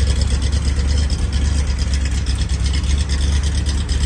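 1967 Corvette Sting Ray's 427 big-block V8 with Tri-Power triple carburetors idling steadily, heard at the rear by the tailpipes, as its carburetors are being dialled in.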